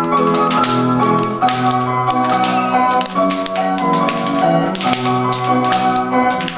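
Instrumental dance music with a steady beat and a bright, note-by-note melody, played for a children's circle dance.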